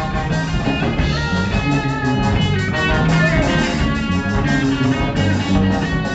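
A live band plays an instrumental passage with no vocals: electric guitars over bass and a drum kit, keeping a steady fast beat.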